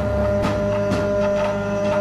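Didgeridoo drone: a low steady tone with a strong fixed overtone above it, and light percussion strokes over it.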